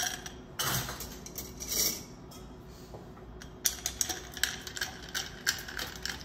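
Ice cubes tipped from a metal scoop into a glass mixing glass, clattering in two bursts in the first two seconds. After a short lull, a bar spoon stirs the ice against the glass in a quick run of clinks, chilling and diluting the cocktail.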